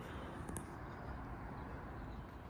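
Low, uneven rumble of wind on the microphone on an open, exposed slope, with a brief faint tick about half a second in.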